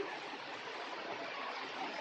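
A steady, even hiss of background noise, with no distinct paper creases or taps standing out.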